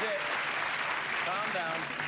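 Studio audience applauding steadily, with a voice briefly heard over the clapping.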